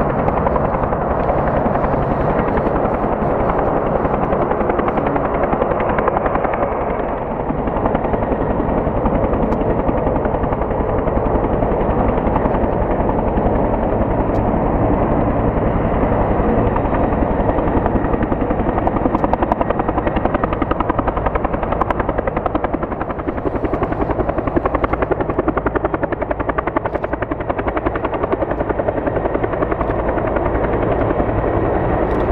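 Bell 212 helicopter flying close by: the steady, rapid beat of its two-bladed main rotor over the running of its Pratt & Whitney Canada PT6T-3 twin turboshaft engines.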